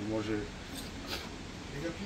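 Paprika shaken from a small paper packet over a metal pan of potatoes: two faint short rustles in the middle, with a man's voice trailing off at the start and resuming briefly near the end.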